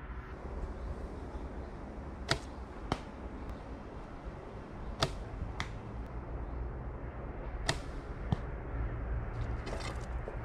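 Rapid shooting with a 30-pound Drake Mongolian bow: three sharp snaps of the string on release, each followed about half a second later by a second knock. Near the end, a quick rattle of clicks as an arrow is pulled from the back quiver.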